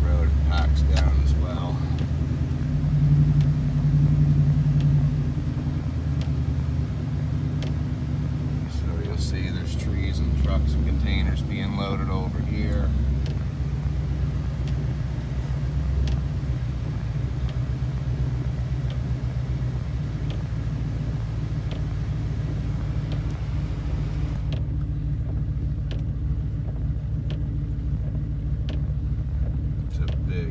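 Vehicle engine and road noise heard from inside the cab while driving slowly: a steady low rumble, heavier in the first few seconds.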